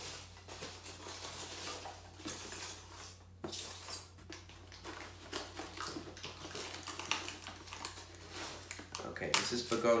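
Rustling and crackling of packing material and cardboard as a potted plant is unpacked by hand from a shipping box: irregular small crinkles and clicks, with a sharper crackle about three and a half seconds in.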